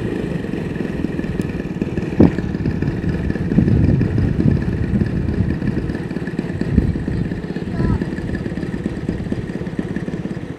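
Wind buffeting the microphone outdoors: a loud, uneven low rumble, with a sharp knock about two seconds in.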